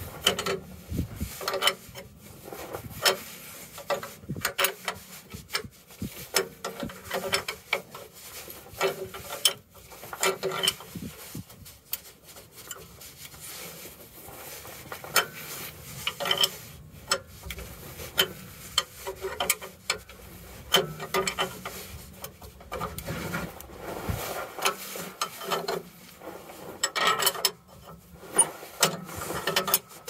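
A wrench turning the nut on an air-brake caging bolt, with repeated metal-on-metal clicks and scraping in irregular strokes. The tightening draws back the spring in the spring brake chamber, caging it to release the parking brake.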